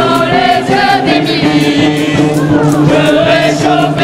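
A banda, a street brass band of trumpets and sousaphone, playing loudly over a steady drum beat, with voices singing along.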